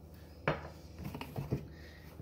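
Kitchen handling sounds as a small vanilla extract bottle is handled over a mixing bowl: one sharp click about half a second in, then a few faint light ticks.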